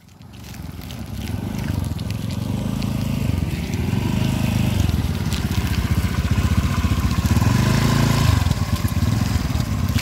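Small motorcycle engines running while riding along a muddy dirt road: a steady low rumble that fades in at the start and builds over the first two seconds.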